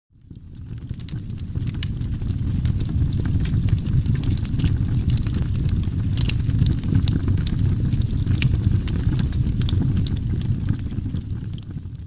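A steady low rumble with many sharp crackles scattered through it, fading in over the first couple of seconds and fading out near the end.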